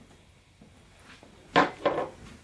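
Two knocks of empty shot glasses being set down on a tray, close together near the end, after a quiet stretch.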